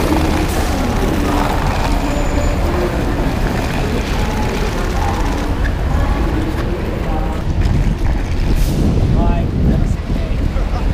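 Traffic noise from buses and cars idling and passing: a steady low rumble with background voices, and a short warbling chirp near the end.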